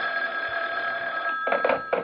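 Telephone ringing: one steady ring of about a second and a half, then a shorter burst near the end.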